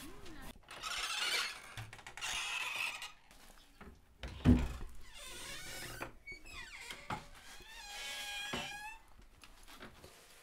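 A thump about four and a half seconds in. Near the end, a wooden door's hinge creaks and squeals for about two seconds in wavering, rising and falling tones as the door is opened.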